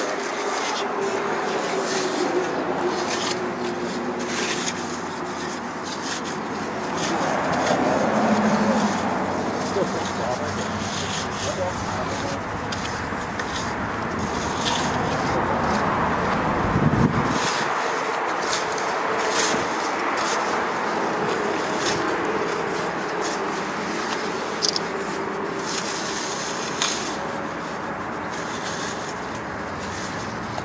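Steel hand trowel scraping and rubbing over soft, freshly placed concrete on a vertical wall in repeated short strokes, as rock joints and texture are carved into it.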